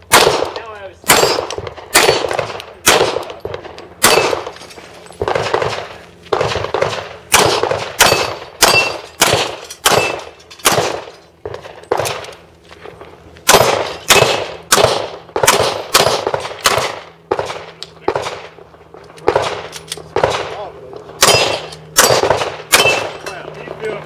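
Handgun fired in fast strings during a practical-shooting stage, many sharp cracks often in pairs about half a second apart, each echoing briefly, with a short lull about twelve seconds in. Some shots are followed by a brief high ring from hit steel targets.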